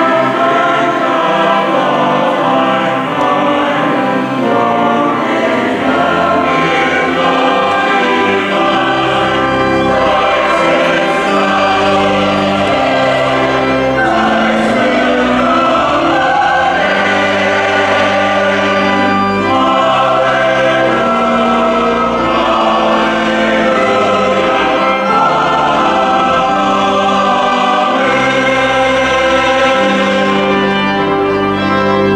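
Mixed chancel choir of men's and women's voices singing in parts with accompaniment; low bass notes join about eight seconds in and the music carries on steadily.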